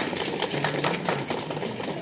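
Rain pattering on umbrellas: a dense, fast, irregular ticking.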